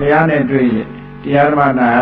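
A monk's voice giving a Buddhist sermon in Burmese, in a drawn-out, sing-song delivery with long held and sliding pitches, and a short pause about a second in.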